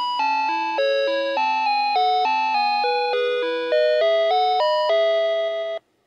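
Playskool Storytime Gloworm toy playing an electronic chime-like melody, a tune over a lower second part, with notes changing a few times a second; it cuts off abruptly near the end.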